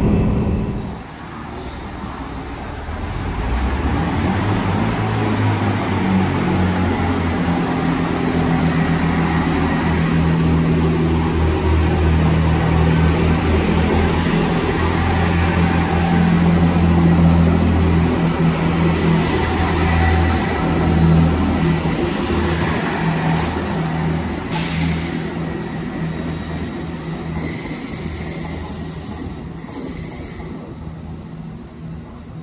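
Diesel multiple unit's engines running with a steady low drone as the train pulls out of the platform. The sound grows over the first few seconds and fades in the last several seconds as the train moves away, with a few sharp clicks near the end.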